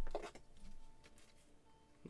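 Faint handling noise of a trading card and a clear plastic card holder, a soft rustle of plastic and card. A brief louder rustle comes right at the start.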